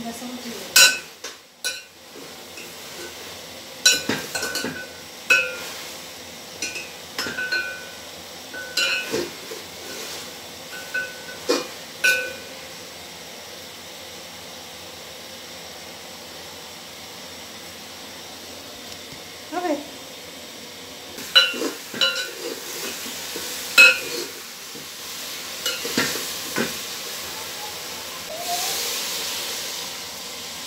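A metal spoon stirring chicken pieces in an aluminium cooking pot, with repeated ringing clinks of spoon against pot, in two spells separated by a quiet stretch of several seconds. Near the end, a soft hiss as water is poured into the pot from a plastic jug.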